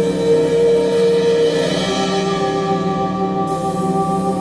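Live trio music: a woman singing over an electric keyboard, with drum kit and fretless bass. Long held notes: one sustained note gives way to other held notes about two seconds in.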